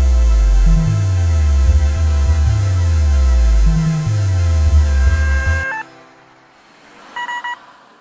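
Electronic ambient / trip-hop music: a deep bass line of notes sliding downward, one after another, under layered sustained synth tones. The music cuts off suddenly about three quarters of the way through, leaving a quiet pause broken near the end by a short, stuttering electronic beep.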